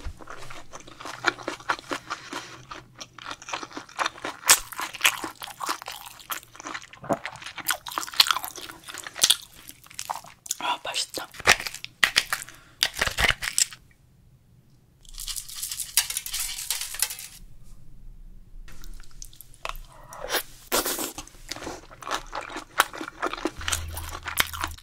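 Close-miked eating of soy-sauce-marinated raw crab: shell cracking and crunching between the teeth, with wet chewing. Just past the middle there is a short pause, then about two seconds of steady hiss, before the crunching resumes.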